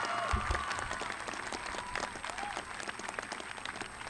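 A crowd of graduates and audience applauding, many hands clapping together. A few voices call out over the clapping in the first half, and the applause slowly dies down.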